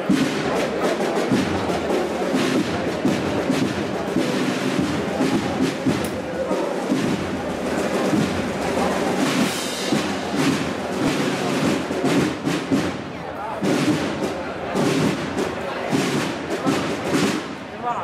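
Crowd voices mixed with irregular drum beats and thumps from a procession band.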